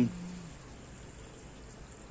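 A man's drawn-out hesitating hum fades out in the first half second, then only a faint, steady hiss of outdoor background remains.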